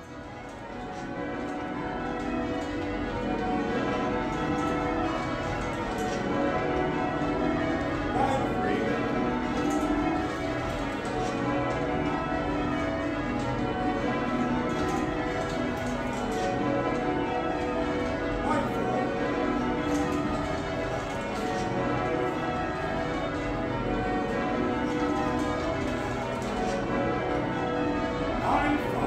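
The ring of twelve church bells of St Mary Redcliffe, a heavy Taylor ring with a tenor of about 50 cwt in B, being rung full-circle from the ropes in changes: a dense, continuous stream of overlapping bell strokes, fading in over the first two seconds.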